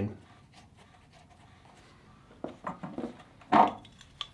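A few short handling noises from tightening a threaded brass adapter into a water filter head with a wrench, after a couple of seconds of near quiet. The loudest comes a little before the end.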